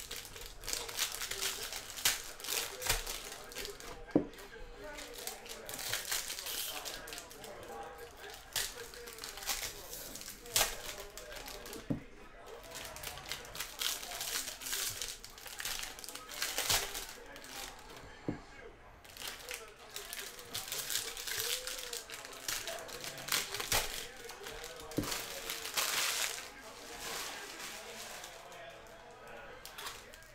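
Foil wrappers of Topps Series 1 jumbo baseball card packs crinkling and tearing as the packs are ripped open by hand, with irregular sharp crackles throughout.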